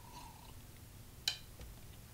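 One sharp click about a second in: an online Go client's stone-placement sound as the opponent's move lands on the board.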